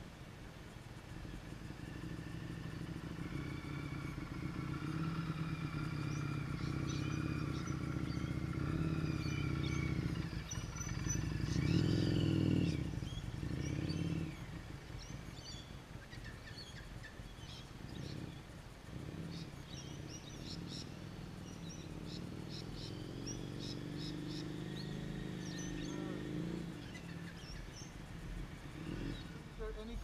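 Motorcycle engine running, growing louder to a peak about twelve seconds in as a bike comes past close, then easing off. Short high chirps, likely birds, come over the second half.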